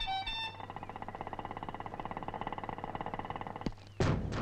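Street horns: two short beeps, then a rapid, steady pulsing ring that runs for about three seconds and stops shortly before the end.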